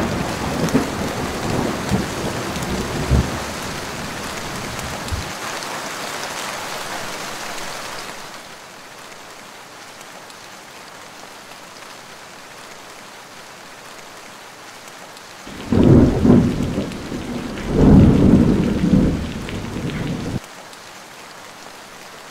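Thunderstorm sound effect: heavy rain with rolling thunder for the first few seconds, easing to a steadier rain hiss about eight seconds in. Two loud thunderclaps follow about sixteen and eighteen seconds in, and the second cuts off suddenly back to the rain.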